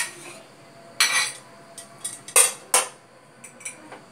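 A kitchen spatula knocking and scraping against a glass serving bowl: a sharp knock at the start, a short scrape about a second in, two loud clinks close together around the middle, then a few light ticks.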